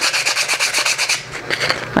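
Sandpaper rubbed in quick back-and-forth strokes over the cut edges of a dry, unfired clay bowl, smoothing off the rough edges of its yarn holes. The strokes ease off about a second in.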